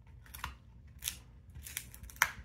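A Tibetan mastiff gnawing on a braided chew, its teeth giving a few short, crisp crunches, the sharpest about a second in.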